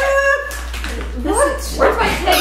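A whining, voice-like sound: one held note at the start, then a rising glide about a second and a half in.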